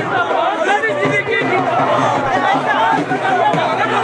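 A dense crowd of men talking and calling out over one another, many voices overlapping at a steady loudness.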